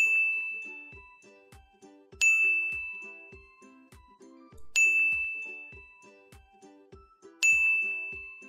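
A bright bell-like chime rings four times, about every two and a half seconds, each ring fading away slowly. It paces the syllables for children to read aloud. Underneath runs soft background music with a steady low beat.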